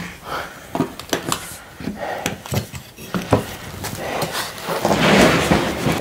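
Pelican Storm Series hard plastic case being opened: a string of sharp clicks and knocks as its latches are released, then a louder rustling scrape as the lid is lifted open near the end.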